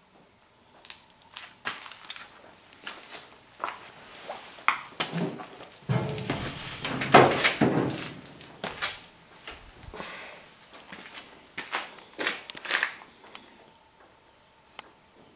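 Irregular crunching and clicking footsteps on a gritty, debris-strewn barn floor, densest and loudest about six to eight seconds in.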